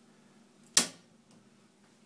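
Circuit breaker for an electric water heater being reset by hand in a home electrical panel: one sharp snap about three quarters of a second in as the tripped breaker is switched back on.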